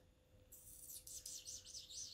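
Faint bird chirping: a quick run of high, twittering notes starting about half a second in.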